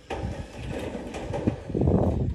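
Corded electric drill driving a screw into corrugated metal roofing sheet, the motor running under load as the screw grinds into the metal, loudest near the end.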